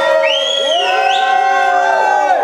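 Concert crowd cheering and shouting, many voices held at once, with a high whoop that rises, holds and climbs again about half a second in.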